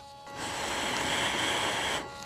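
A person blowing a long, steady breath into a car's hot-wire mass airflow sensor with the engine off, testing whether the sensor reads the air. The rushing breath starts about a third of a second in.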